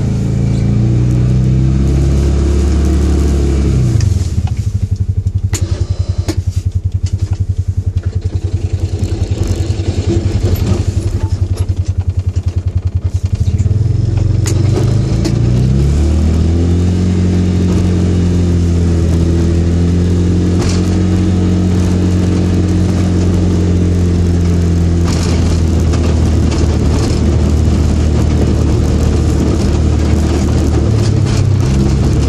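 Polaris Ranger 570 Crew side-by-side's single-cylinder engine running as it plows snow. About four seconds in it drops back to a low, even putter. Around fifteen seconds in it climbs back up in pitch and runs steady again.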